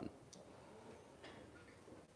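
Near silence: room tone with a faint tick.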